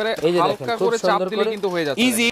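A man talking, his voice running on without a pause.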